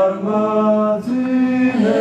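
A woman singing long, held notes in a slow ballad, each note sustained for about a second before moving to the next pitch.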